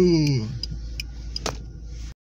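Car turn-signal indicator ticking steadily, about two to three clicks a second, over the low running rumble of the car, with one sharper click about one and a half seconds in.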